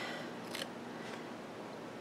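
Faint handling of a paper sticker sheet and metal tweezers: two light ticks, about half a second and a second in, over a faint steady hum.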